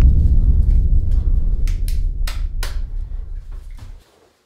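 A deep, loud rumble sound effect that fades slowly and cuts off suddenly at the end, with four or five sharp crackles in the middle.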